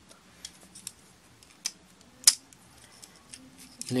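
Hard plastic parts of a Transformers Bumblebee action figure clicking as its joints are moved by hand during transformation: a few short, sharp clicks, the loudest a little past halfway.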